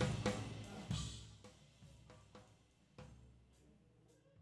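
Recorded drum kit heard through the gated floor-tom microphone channel: a few separate drum hits, at the start, about a second in and near the end, each dying away quickly as the gate closes, with snare leaking into the tom mic.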